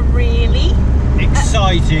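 Steady low rumble of a Ford Transit campervan's engine and tyres, heard from inside the cab while it drives along, under a woman's voice.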